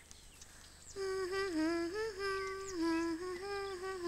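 A voice humming a simple tune in held notes that step gently up and down, starting about a second in after a near-silent pause.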